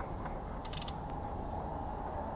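Steady mechanical hum with a short run of small sharp clicks a little under a second in.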